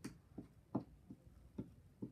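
Wooden alphabet puzzle pieces being handled and set against a wooden puzzle board and tabletop: about five light, irregularly spaced clicks and knocks.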